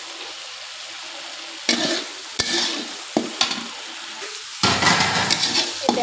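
Masala paste sizzling as it fries in a metal kadai, with a metal spatula stirring and scraping across the pan in separate strokes. About four and a half seconds in, the sizzling and scraping suddenly grow louder and busier.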